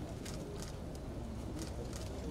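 Outdoor ambience around a gathered group: a steady low rumble with scattered faint, brief high clicks.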